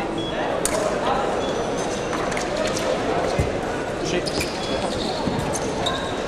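Fencing hall ambience: background voices in a large room, with scattered clicks and knocks and one low thump about three and a half seconds in.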